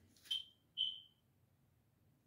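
Two short high-pitched tones about half a second apart, the second a little longer and fading away.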